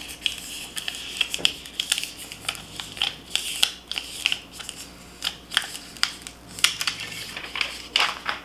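Paper backing being peeled off transfer tape carrying a vinyl decal: an irregular crackling rustle with many small sharp clicks.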